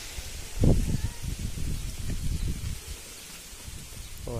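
A heavy thump about half a second in, then a couple of seconds of low crackling rustle that dies away. This is the sound of leaves and branches brushing against a handheld phone as it moves through a mango tree.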